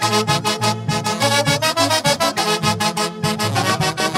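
Live huaylarsh dance music: a saxophone section playing the melody in harmony over timbales and cymbal keeping a steady, driving beat.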